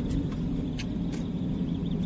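Steady low rumble of a car's engine and tyres heard from inside the cabin while driving, with two brief ticks about a second in.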